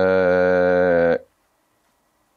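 A man's voice holding one steady, low-pitched hesitation sound for just over a second, then stopping abruptly.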